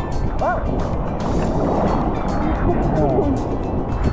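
Sea water sloshing around a phone held at the surface, with steady wind noise on the microphone; a voice exclaims "oh" about half a second in.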